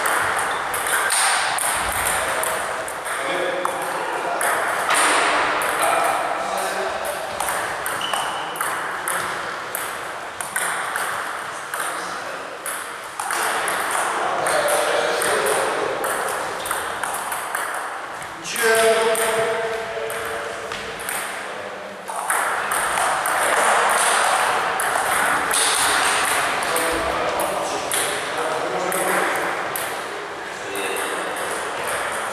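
Table tennis balls clicking rapidly on tables and bats in rallies, from several tables at once in a sports hall, with people's voices in the background.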